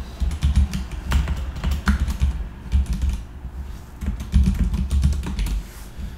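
Typing on a computer keyboard: irregular key clicks with dull thuds as a short sentence is typed, with a brief lull in the middle.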